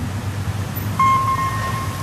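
Low traffic rumble from the street. About halfway through, a pedestrian crossing signal starts a steady high beep and holds it for about a second, signalling that the walk light has come on.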